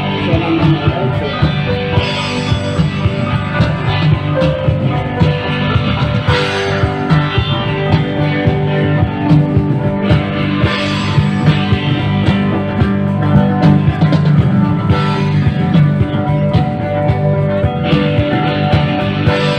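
A rock band playing live, loud and steady: electric guitars, an acoustic guitar, a keytar and a drum kit.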